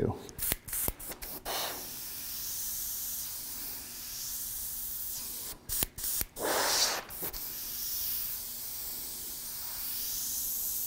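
Gravity-feed airbrush spraying paint: a steady high hiss of compressed air that cuts out briefly a few times in the first second and a half and again about six seconds in, with louder bursts about a second and a half in and near the seven-second mark.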